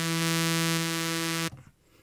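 Sawtooth lead synth patch from Reason's Thor, run through Scream 4 overdrive, an EQ with the lows cut and UN-16 unison, holding one steady note with a chorus-like width. The note stops abruptly about one and a half seconds in.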